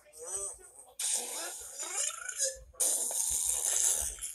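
A brief voice, then a loud hiss in two stretches, the second cutting in suddenly about three seconds in: a magic-transformation sound effect.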